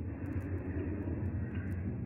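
Steady outdoor background noise: a low rumble with no distinct events.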